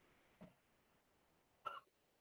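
Near silence, broken twice by brief faint noises: a soft low one about half a second in and a short, sharper one near the end.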